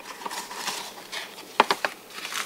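Light rustling as a cardboard tea box is opened and a plastic pouch of tea sachets is handled, with a quick cluster of three or four sharp clicks about a second and a half in.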